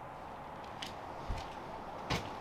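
Quiet room tone: a faint steady hiss with a few soft clicks and one short low thump.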